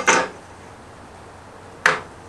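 Steel framing square knocking against a plywood tabletop as it is set in place: a short clatter at the very start and a sharper knock with a brief ring near the end.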